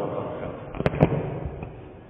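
Two sharp clicks about a fifth of a second apart, about a second in, over a fading murmur of voices.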